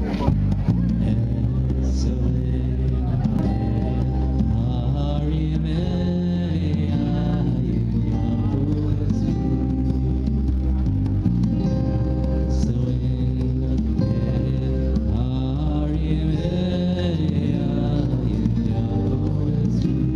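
Amplified acoustic guitar played through a PA with a man singing a slow melody over it, steady and continuous.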